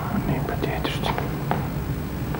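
Soft whispered speech, with a hissy burst about a second in, over a steady low hum.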